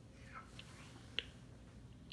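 A quiet room with a few faint, short clicks, the sharpest about a second in.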